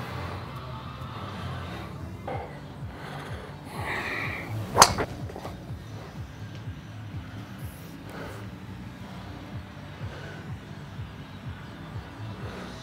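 A golf driver striking a ball: one sharp crack of clubface on ball about five seconds in.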